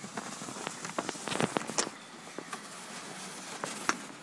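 Snow crunching and the plastic scoop of a Garant snow sleigh scraping as it is slid and jerked to tip out its load of snow. A run of crisp crackles is densest about a second and a half in, with a sharp click near the end.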